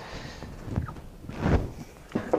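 Handling sounds at a wooden workbench: a faint knock a little under a second in, then a louder dull knock about a second and a half in as the metal-cased motor controller is set down on the bench top.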